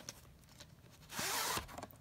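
A VHS cassette being handled and slid against its box: light clicks, then a short scraping rasp a little over a second in, the loudest sound here.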